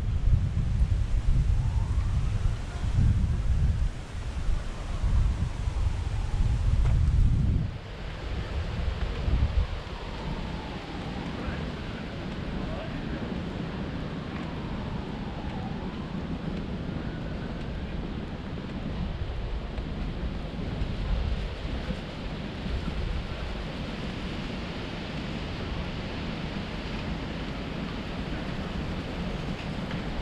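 Wind buffeting the microphone in heavy gusts for about the first eight seconds, then easing to a steadier low rush, with faint birdsong chirps in the background.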